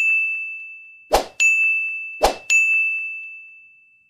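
Button pop-up sound effects: three bright bell-like dings about a second apart, each right after a short swish, each ringing out and fading slowly.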